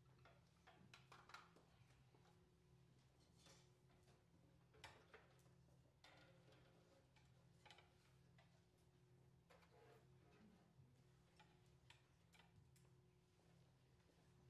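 Near silence: room tone with a steady low hum and scattered faint clicks and knocks.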